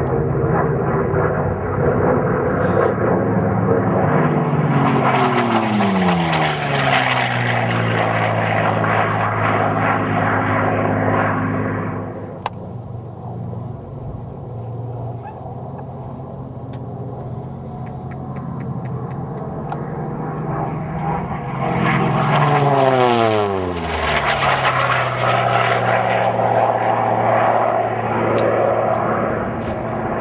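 Two low, fast fly-bys of Unlimited-class piston-engine propeller racing aircraft. The engine note swells loud and drops steeply in pitch as each one passes, the second pass sharper than the first, with a quieter stretch between them.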